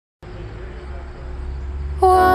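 Roadside outdoor sound of road traffic, a vehicle approaching and growing steadily louder, cutting in suddenly a moment after the start.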